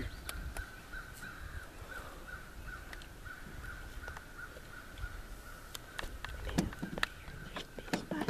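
A short, high call repeated steadily about four times a second from an animal in the background, with a few sharp clicks and knocks in the last couple of seconds.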